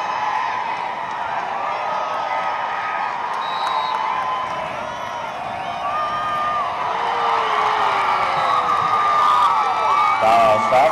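Football stadium crowd yelling and cheering: a dense mass of voices with single shouts and whoops standing out, growing louder over the last few seconds.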